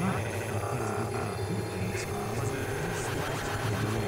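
Improvised modular synthesizer music: a steady low drone under repeated swooping pitch glides that rise and fall, with short stuttering, chopped bursts higher up.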